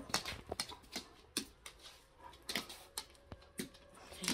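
Scattered light clicks and taps, about a dozen, from dogs moving about on a hard floor as they go for a plush toy.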